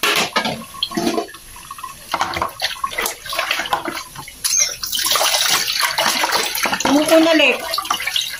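Water running from a kitchen tap into a sink while dishes are washed and rinsed, with scattered knocks of dishes and a basin in the first half; from about halfway on the water runs steadily and louder.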